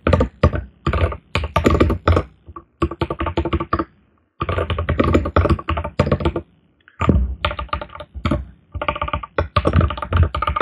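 Fast typing on a computer keyboard, in quick bursts of keystrokes broken by short pauses about two and a half, four and seven seconds in.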